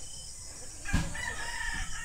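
Faint rooster crowing, with a single thump about a second in.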